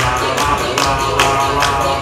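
Loud dance music with a steady fast beat, about two and a half beats a second, and a pitched melody over it.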